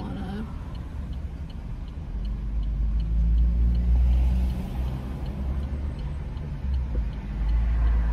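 Inside a car: the turn indicator ticks steadily at about two and a half ticks a second, over engine and road rumble that swells about two seconds in and again near the end.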